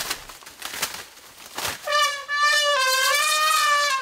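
Young Asian elephant trumpeting: one long, brassy call that begins about halfway in and lasts about two seconds, its pitch sagging slightly at the end. A short sharp crack comes just before it.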